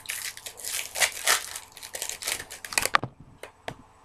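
Plastic wrapper of a baseball card pack crinkling as it is torn open and handled, stopping about three seconds in, followed by a couple of light clicks.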